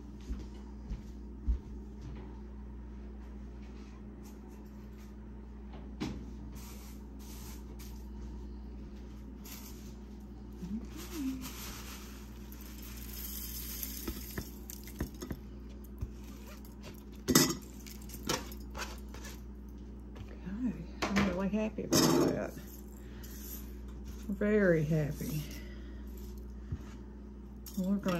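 Crisp dried onion tops rustling as they are poured through a stainless steel funnel into a glass mason jar, with scattered clinks and knocks of bowl and tray against the funnel and jar over a steady low hum. A few quiet words come near the end.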